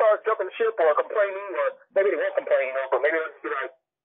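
Speech: a person talking, with a narrow, phone-like sound.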